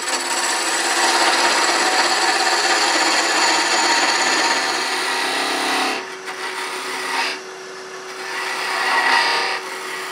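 Shop-made 8 mm beading and parting tool cutting a wooden tenon down to one-inch diameter on a spinning lathe. The steady cutting noise lasts about six seconds, followed by two shorter cuts, with the lathe's steady hum showing between them.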